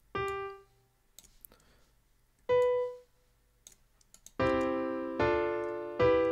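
Software piano instrument sounding two short single notes, then from about four seconds in two sustained chords, one after the other. These are triads of the C major scale being built up note by note.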